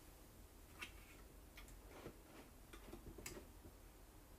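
Near silence with a few faint, irregular clicks, about four, spread unevenly through it.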